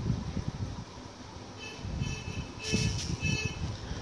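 Quiet background rumble with two short, high-pitched tones about a second apart near the middle.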